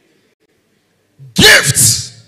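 Dead silence, then about a second and a half in, a man's sudden, very loud vocal burst close to the microphone, in two quick parts with a lot of breathy hiss.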